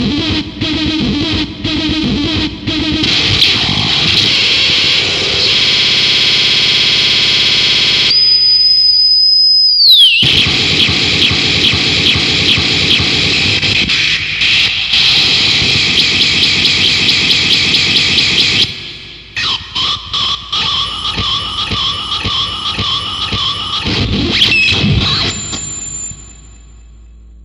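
Harsh noise music: a loud, dense wall of distorted electronic noise that cuts in abruptly. About eight seconds in it gives way to a steady high whine that slides down in pitch just before the wall returns. From about nineteen seconds it breaks into choppy, stuttering pulses under a wavering whistle-like tone.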